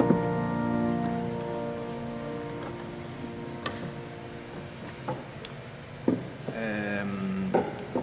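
Pipe organ (Balbiani Vegezzi-Bossi, 1964) releasing a full fortissimo chord with reeds and mixtures right at the start, the sound dying away over several seconds in the church's long reverberation. A few sharp clicks, and a man's voice briefly near the end.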